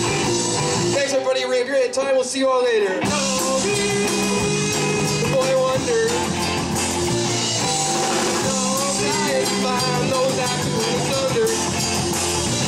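Live rock band playing electric guitar, keyboard and drums. About a second in, the low end and drums drop away for about two seconds, leaving a lead line that bends and slides down, then the full band comes back in.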